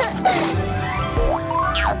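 Cartoon background music with comedy sound effects laid over it: several quick sliding pitch glides, up and down, the last a steep downward slide near the end.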